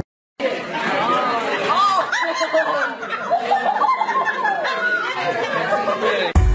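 After a brief silence, several voices chatter excitedly over one another, with a woman laughing.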